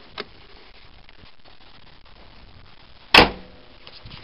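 A faint click just after the start, then one loud, sharp bang about three seconds in.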